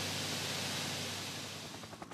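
Grain pouring from an overhead chute onto a pile, a steady hiss that fades near the end.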